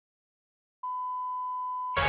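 A steady electronic beep at one pitch, the plain tone used as a censor bleep, starts after a moment of silence, lasts just over a second and cuts off abruptly.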